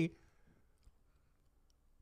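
A man's voice trails off at the start, then near silence with one faint click about a second in.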